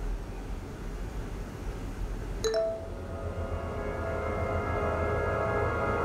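Film soundtrack from a horror short: low, quiet background at first, then a short chime-like ping about two and a half seconds in, after which sustained music of several held tones builds and grows louder.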